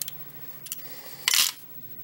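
A revolver being handled: a few small metal clicks, then a short, louder rasp a little past a second in as the cylinder is spun.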